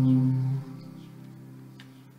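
The last held chord of a worship song, sung and played, stops about half a second in and dies away in the room's reverberation. A faint click comes near the end.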